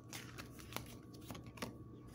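A deck of oracle cards being shuffled by hand, with about five soft, short card slaps and flicks.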